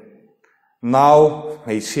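A man speaking emphatically into a microphone. His voice trails off, breaks for a short pause, then comes back loud about a second in with a long drawn-out word before the speech runs on.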